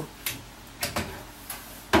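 A few short clicks and knocks of plastic plugs and cables being handled as a router's power cable is pulled out of a network rack.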